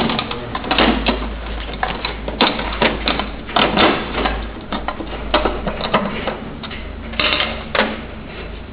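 Irregular clicks, knocks and clatter from metal table parts and screws being handled during assembly, some strokes sharper and louder than others, over a low steady hum.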